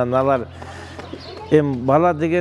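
A man's voice speaking in two short stretches with a pause of about a second between them. A faint bird call is heard in the pause.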